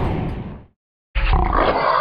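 Background music fading out, then after a brief silence a loud big-cat growl sound effect starting about a second in, the logo sting of the outro.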